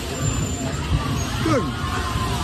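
Bumper-car rink din: a steady low rumble of the electric bumper cars running over the rink floor, with crowd chatter around it. A voice says "good" about one and a half seconds in.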